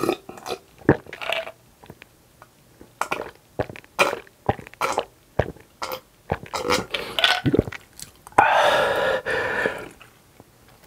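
A drink gulped from a glass jar in a series of swallows, then one loud, long burp lasting about a second and a half near the end.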